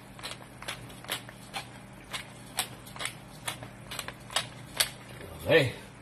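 Thick gravy bubbling in a cast-iron pan, its bursting bubbles giving sharp pops about twice a second over a faint steady hum.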